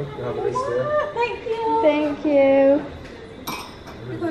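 A woman's voice vocalizing in drawn-out, sliding tones, then a single short, sharp clink near the end.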